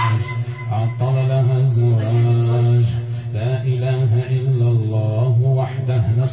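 A man chanting a melodic recitation in a low voice, in wavering phrases with short breaks.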